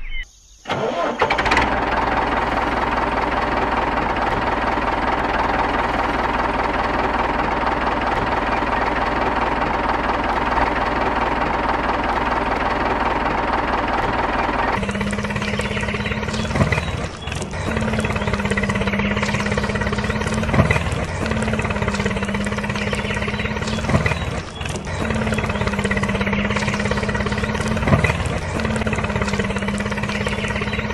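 Tractor engine running steadily after a short gap near the start. About halfway through it changes to a deeper steady engine drone that dips briefly every three to four seconds.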